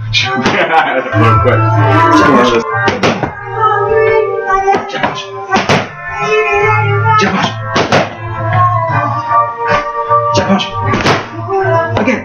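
Boxing gloves smacking focus mitts, a sharp slap every second or two, over background music with a low bass line.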